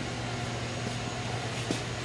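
Steady low mechanical hum of a workshop's background machinery, with a faint higher tone held above it and a light click near the end.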